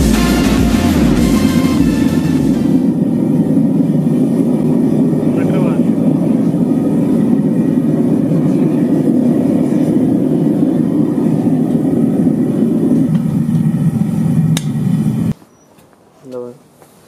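Gas burner of a homemade foundry furnace running with a steady, low rushing noise. The noise stops abruptly near the end.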